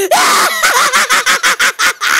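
A voice actor's maniacal villain laugh: a loud opening cry, then a rapid run of 'ha's about seven a second.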